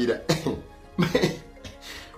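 A man's voice in two short bursts, one at the start and one about a second in, with quiet gaps between.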